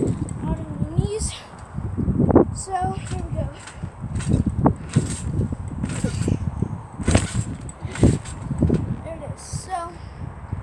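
A person bouncing on a trampoline bed: a series of muffled thuds, about one a second, including a seat-drop landing, with voices in the background.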